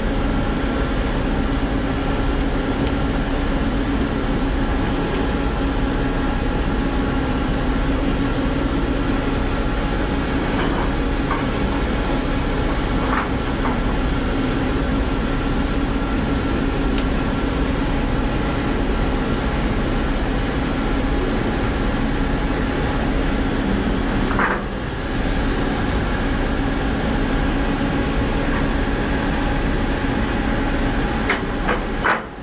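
Ship's machinery running with a steady drone and a constant low hum, with a few faint clanks now and then. The drone dips briefly about 24 seconds in.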